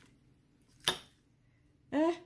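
A single sharp click about a second in, a metal fork knocking against a ceramic plate, then a short burst of voice right at the end.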